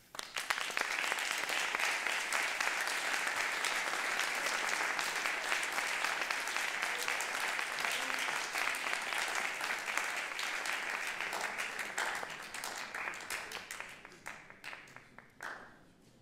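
Audience applauding: dense clapping starts abruptly, holds steady for about twelve seconds, then thins out into a few scattered claps and dies away near the end.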